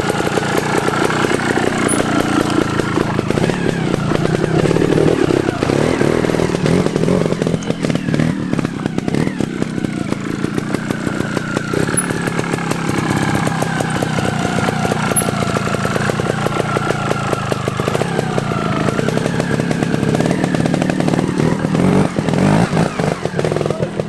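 Trials motorcycle engine running and being revved as the bike is ridden up a steep, rocky hillside section. The revs rise and fall with the throttle throughout.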